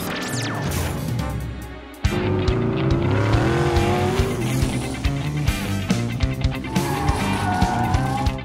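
Cartoon car sound effects: an engine revving and tyres squealing as the animated Batmobile speeds off, over background music with a steady beat that starts suddenly about two seconds in.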